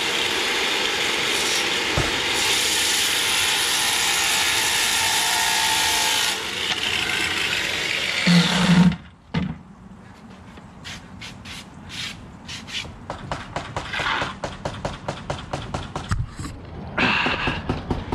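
Electric circular saw running and cutting cedar shake siding, a loud steady sound that stops about nine seconds in. After that, a quicker run of light knocks and scrapes from the wood being handled.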